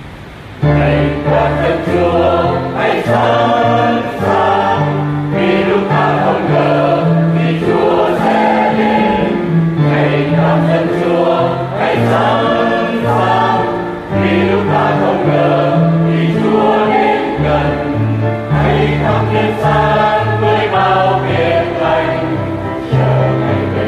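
A church choir singing a hymn in Vietnamese, coming in about half a second in after a brief dip and then carrying on steadily over low held notes.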